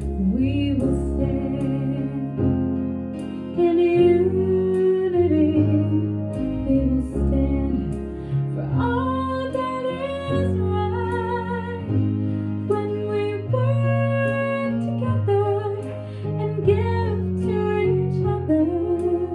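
A woman singing a slow song into a handheld microphone, holding long notes over instrumental accompaniment.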